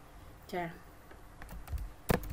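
A few faint, light clicks of a computer keyboard or mouse near the end, after a single short spoken syllable.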